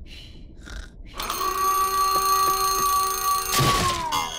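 Cartoon alarm clock ringing: a loud, steady bell ring starts about a second in and ends near the end in a crash as the clock bursts apart, its tone sliding down in pitch. Before the ring, soft breathy snoring at a slow, even pace.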